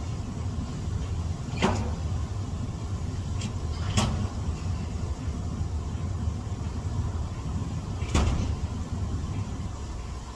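Jacuzzi jets churning the water with a steady low rumble, broken by three short splashes about one and a half, four and eight seconds in.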